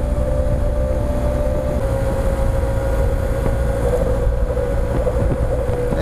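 Wind rush on the microphone and the steady drone of a BMW R1200 GS Adventure's boxer-twin engine cruising at highway speed, its hum dipping slightly in pitch about two seconds in.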